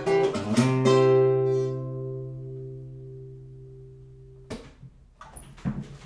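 Nylon-string classical guitar playing the last notes of a solo piece and ending on a final chord that rings and slowly fades for over three seconds. The ringing is cut off suddenly by a bump, followed by a few soft knocks and rustles near the end.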